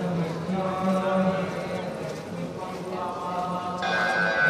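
A man's voice chanting in long held notes that step between a few pitches. A second, higher held tone joins just before the end.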